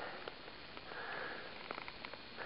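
A person sniffing and breathing through the nose, with a soft swell of breath about a second in, plus a few faint clicks.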